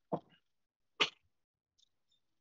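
A person makes two short, sharp bursts of breath about a second apart, the second the sharper and louder, like a cough or a sneeze.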